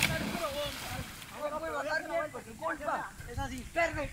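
Splash of a person jumping from a tree branch into the water, right at the start, followed by voices talking and calling out.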